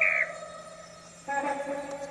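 Film soundtrack: the end of a character's high trilled laugh, closing on a short falling note whose tone fades away; just over a second in, a lower steady held musical tone sets in.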